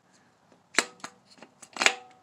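Sharp metallic clicks and knocks from a distributor being turned by hand and seated on a 2.4-litre Mitsubishi engine. There are a few separate clicks, some with a brief ring, and the loudest comes near the end.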